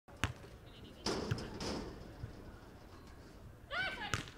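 Beach volleyball play: a sharp hit of hand on ball about a second in with a short rush of noise after it, a few lighter knocks, and a player's short shout near the end.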